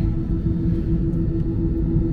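Steady drone inside an airliner cabin on the ground: a low rumble under a constant hum that holds one pitch.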